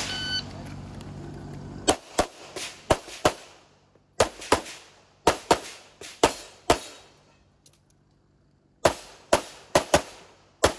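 A shot timer beeps briefly, and about two seconds later a Canik Rival 9mm pistol opens up in rapid strings of shots a quarter to a third of a second apart. There are short pauses between strings and a longer gap of about two seconds near the end before the firing resumes.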